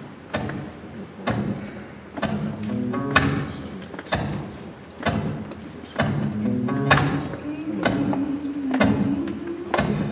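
Live acoustic guitar and bass guitar opening a song, with strummed chords struck about once a second over a moving bass line.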